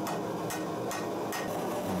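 Hand hammer striking a bent brass bar on an anvil: a few sharp blows about half a second apart.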